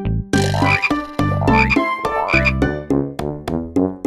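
Cartoon frog croaking three times over a bouncy children's music intro.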